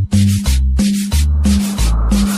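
Instrumental cumbia with no singing: a bass line under a steady scraped-percussion rhythm, about three scrapes a second.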